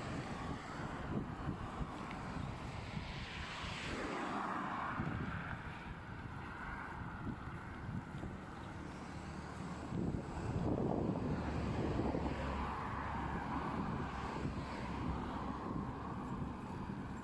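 Road traffic on a multi-lane road, with cars passing and the sound swelling as they go by, about four seconds in and again around ten to twelve seconds. Wind noise on the microphone throughout.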